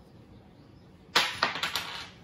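Plastic being crinkled: a sudden burst of sharp crackling rustles starting about halfway through, loudest at the first, with several quick follow-up crackles over under a second.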